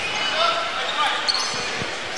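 Gymnasium ambience during a stoppage in a basketball game: indistinct voices echoing in a large hall, with a few short sneaker squeaks on the hardwood court.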